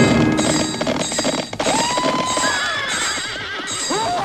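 A sampled horse whinny in an electronic track: one long, wavering call starts a little under two seconds in, and another begins near the end, over the track's beat.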